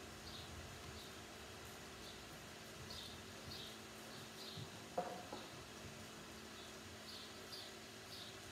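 Faint small-bird chirps, short and high, coming roughly twice a second in irregular pairs, over a steady low hum. A single sharp knock sounds about five seconds in.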